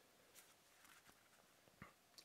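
Near silence: room tone, with a few faint, brief ticks from hands picking up and handling a small cork card wallet.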